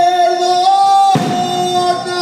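Live banda sinaloense music: a long held note over the band, then a crash from the drums about a second in as the band's accompaniment changes.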